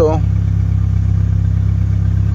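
Chevrolet Chevy 1.6 four-cylinder petrol engine idling steadily from a cold start. The scan tool reads manifold pressure at about 51 kPa where about 33 kPa is expected, a reading the mechanic ties to the car's heavy fuel consumption.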